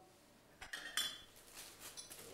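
Light clinking of crockery and cutlery being handled: a few faint chinks of china and metal from about half a second in.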